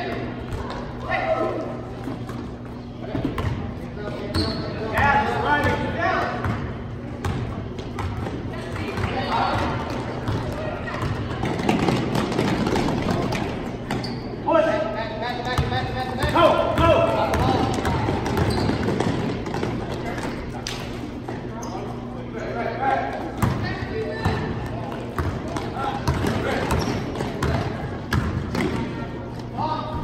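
Game sounds of basketball in a gym: players' and spectators' voices calling out on and off, with a basketball bouncing on the court and scattered thuds, over a steady low hum.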